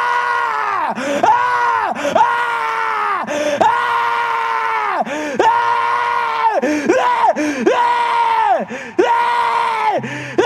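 A man screaming over and over in long held cries, about one a second, each dropping in pitch as it breaks off. It is a deliberate 'night scream'.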